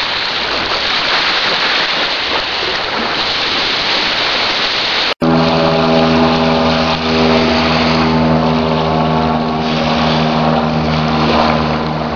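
For about five seconds, a steady rushing noise of small waves breaking on the lake shore. Then, after an abrupt cut, a steady low-pitched engine drone from a small propeller aircraft flying overhead.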